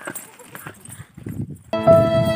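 Faint scattered knocks and rustles, then near the end background music cuts in abruptly with long held, string-like tones.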